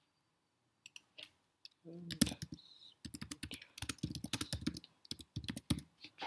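Typing on a computer keyboard: a few separate clicks about a second in, then a quick run of keystrokes for about three seconds as a short phrase is typed.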